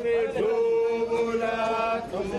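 A group of men singing a chant together, holding one long steady note from about half a second in.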